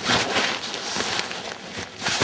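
Nylon stuff sack rustling and swishing as a mesh food storage bag is stuffed into it by hand, with a few soft bumps.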